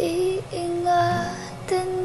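A young girl singing a few long held notes that slide between pitches, over soft musical accompaniment, with a brief break near the end.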